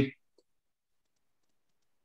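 A man's voice trails off at the very start, followed by a single faint click and then near silence, the call audio gated down to nothing.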